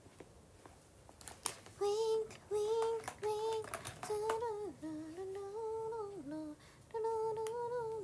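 A young woman humming a tune to herself: a run of short held notes that steps down and back up, with a brief break near the end. A few light clicks come just before the humming begins.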